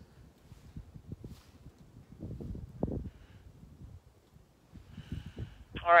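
Irregular low rumbles and bumps on the phone's microphone while waiting on the radio, with a faint short hiss just before the other station's reply comes through the handheld's speaker near the end.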